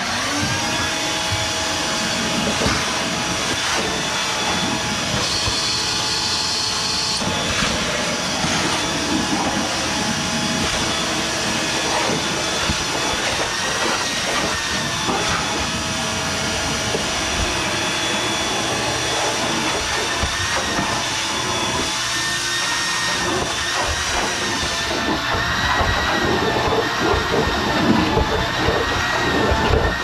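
Wet/dry shop vacuum switched on and running steadily with a motor whine, its hose sucking leftover water and dirt from the bottom of a hot tub.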